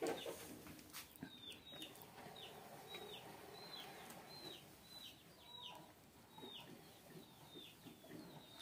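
Faint, high bird peeps repeated about twice a second, each one short and falling in pitch. A few light clicks come in the first second or two.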